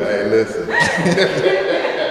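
People talking and chuckling: voices and laughter only.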